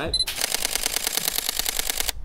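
A camera's short high focus beep, then a rapid burst of shutter clicks, like continuous shooting, lasting nearly two seconds and stopping abruptly.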